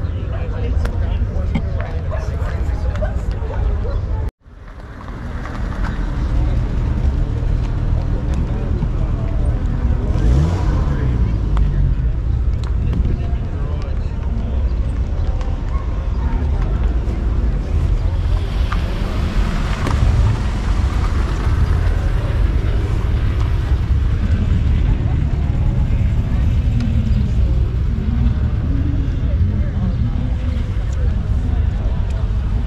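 Outdoor show-field ambience: a steady low rumble of wind on the microphone under distant, indistinct voices. The sound cuts out abruptly about four seconds in and fades back up.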